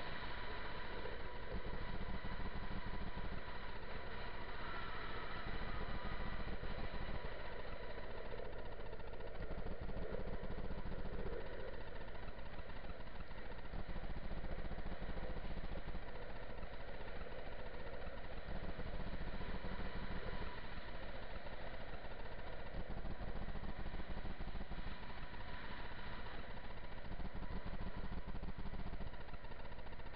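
Skateboard wheels rolling fast on asphalt: a steady rolling rumble with wind noise, the low end swelling and easing every few seconds.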